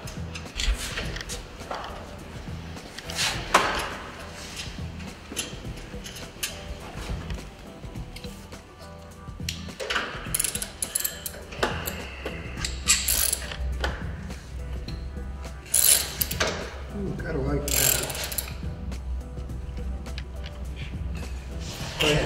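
Ratchet socket wrench clicking in bursts as it turns bolts on a red steel equipment rack, with scattered metallic clanks.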